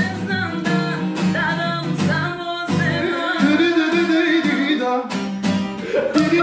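Acoustic guitar strummed in a steady rhythm with voices singing along over it, a sung note held from about halfway through.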